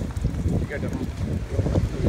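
Wind buffeting the microphone in an uneven low rumble.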